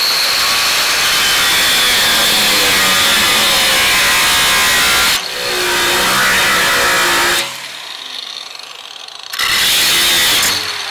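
Angle grinder with a cutoff wheel cutting through the steel wall of an old oil tank: a loud, steady grinding with a high whine. It breaks off briefly about five seconds in, runs quieter for a couple of seconds from about seven and a half seconds, then bites in loud again near the end.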